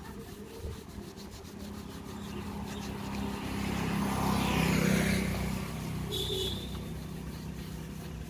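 A motor vehicle passing by, growing louder toward the middle and then fading away, over a steady low hum.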